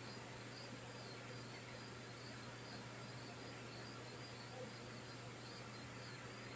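Quiet kitchen room tone: a low steady hum with a faint high chirp repeating about twice a second.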